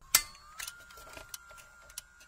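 A small mechanism running: a sharp click just after the start, then a steady high whine with scattered light clicks.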